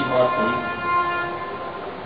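Public-address microphone feedback: several steady ringing tones at once, with a voice briefly under them near the start, dying away shortly before the end.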